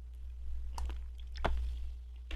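A few short crunchy crackles close to the microphone as something is handled, the sharpest about one and a half seconds in, over a steady low electrical hum.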